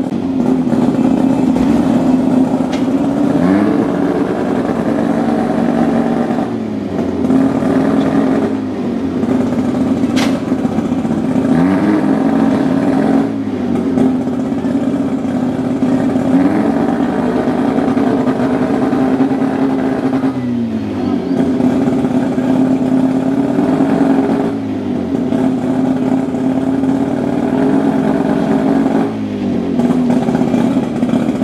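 Turbocharged Mazda 13B two-rotor rotary engine in a Datsun drag car running at a steady held speed, its pitch dipping briefly and recovering every few seconds.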